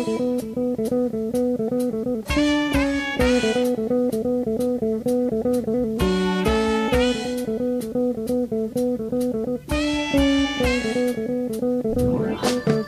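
A funk band playing an instrumental: guitar chords and bass over a steady drum-kit beat, with a short melodic figure coming back about every four seconds.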